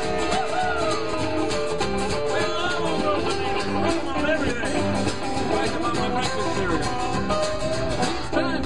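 Live band playing an instrumental break: strummed acoustic rhythm guitar and upright bass under a lead line of bending notes.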